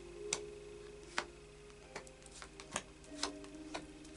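Tarot cards being dealt one by one onto other cards in a spread: a series of about seven light, irregularly spaced clicks and taps as each card is laid down.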